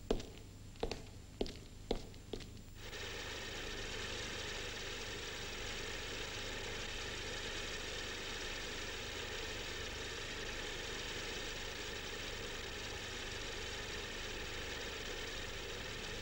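Sharp knocks, about two a second, for the first three seconds. They stop abruptly and give way to a steady hiss with a faint hum.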